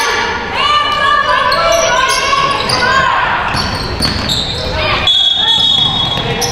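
Live basketball game sounds in a large gym: the ball bouncing on the hardwood floor, short high squeaks of sneakers, and players and spectators calling out. A steady high-pitched tone starts near the end.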